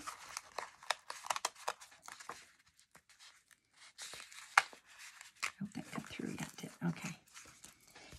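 Cardstock and paper being handled, with irregular crackling and rustling as the layers of a card are flexed apart and a die-cut piece is worked free.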